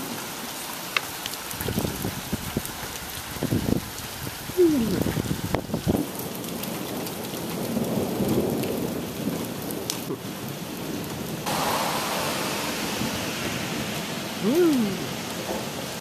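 Thunderstorm: thunder rumbling for the first few seconds over steady rain, the rain growing louder about eleven seconds in. Two brief falling tones sound, about four seconds in and near the end.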